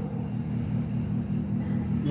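A steady low background hum or rumble, even throughout, with no speech over it.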